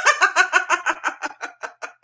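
A woman laughing: a rapid run of giggles, about seven or eight a second, tapering off and growing fainter toward the end.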